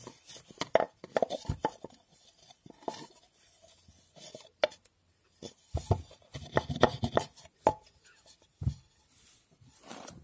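Wooden pestle knocking and rubbing against the inside of a painted wooden mortar as it is handled, giving irregular hollow clacks. There is a short cluster in the first two seconds and a longer, busier run about six to seven and a half seconds in, then a dull knock as wood is set down.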